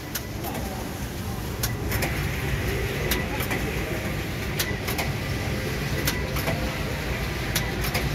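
Computerized flat collar knitting machine running, a steady mechanical hum with a sharp click about every one and a half seconds as the carriage works back and forth. Voices murmur faintly behind it.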